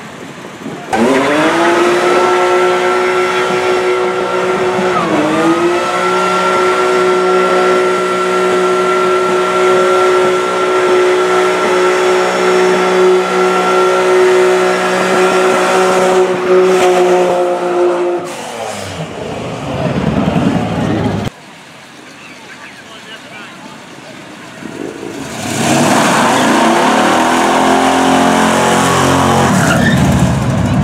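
BMW E30 doing a burnout: the engine is revved up and held high and steady for about 17 seconds while the rear tyres spin and squeal, with one short dip in revs early on, before it is let off. Near the end another car, a yellow Pontiac Firebird, revs up and accelerates away.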